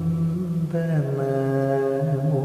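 Male Carnatic vocalist singing a slow Malayalam song in long held notes; a new note starts just under a second in and is held steady.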